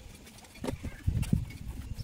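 Steel plastering trowel working cement mortar: a few short scrapes and dull knocks, the clearest about a second in.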